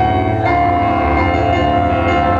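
Keyboard playing live: sustained chords ringing over a steady low bass tone, with a new chord struck about half a second in.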